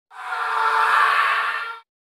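An editing sound effect: a rush of noise that swells and fades out over just under two seconds.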